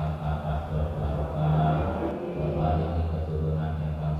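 Islamic dhikr chanted in Arabic by low male voices, with drawn-out syllables in a continuous, rhythmic recitation.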